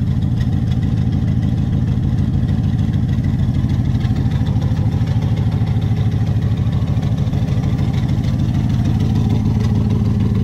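The swapped-in LS7 7.0-litre V8 of a 1967 Chevrolet Corvette idling steadily, with a deep, even, rapid exhaust pulse.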